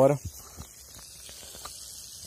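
Faint, steady crackling sizzle of chicken frying in oil, with small scattered ticks, after the last word of a man's voice right at the start.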